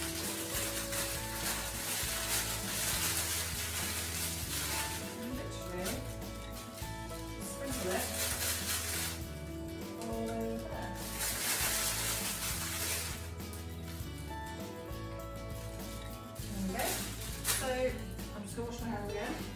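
Demerara sugar sprinkled from a plastic bag over an apple tray bake, heard as two stretches of dry hiss, the first lasting several seconds near the start and a shorter one about eleven seconds in, over steady background music.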